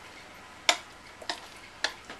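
Metal spoon knocking against a ceramic mixing bowl as wet pudding mixture is scraped out: three sharp clicks, about half a second apart.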